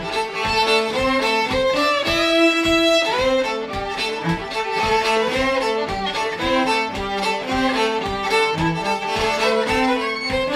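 An old-time fiddle tune played as a fiddle and cello duet. The fiddle carries the melody in quick bowed notes while the cello bows a steady rhythmic backing underneath.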